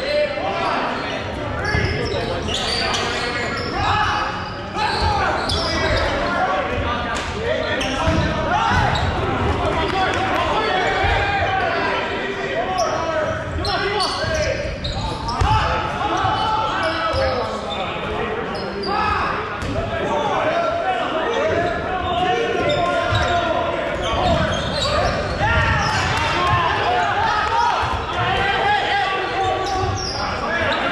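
Dodgeball play in an echoing gymnasium: dodgeballs repeatedly thudding and bouncing on the hardwood floor, under continuous shouting and calling from the players.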